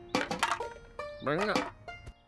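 Cartoon soundtrack: light music with a few knocks near the start, then a short wordless character vocalization with a rising-then-falling pitch about two thirds of the way through.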